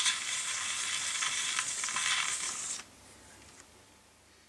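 Hiss and crackle of a needle running in the groove of a small promotional record, played through a folded cardboard horn while the disc is turned by hand, after the recorded message has ended. The hiss stops suddenly about three seconds in as the disc stops turning.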